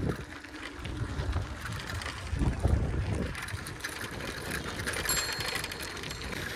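Wind buffeting the microphone and low road rumble from a two-wheeler riding fast along a rough dirt track, with no clear engine note.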